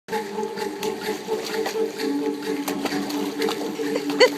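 A puppy pawing and stepping in shallow fountain water: a run of irregular quick splashes, over a steady low hum.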